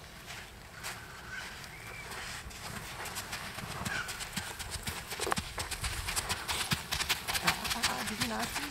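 Hoofbeats of a ridden horse moving over a sand arena, a steady run of soft thuds that grows louder as the horse comes close.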